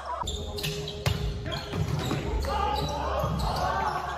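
A volleyball being struck and bouncing in a gymnasium, several sharp thuds echoing in the hall, with players' voices in the background.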